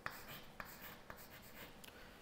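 Chalk writing on a blackboard: faint scratching strokes with a few light taps as a word is written.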